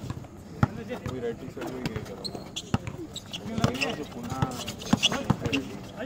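Basketball bouncing on an outdoor concrete court, irregular sharp thuds of dribbling and play, with players' voices calling out in between.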